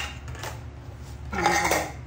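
A plate set down on a tiled floor: a sharp clack at the start, a lighter tap, then a louder ringing clatter of the plate against the tiles about a second and a half in.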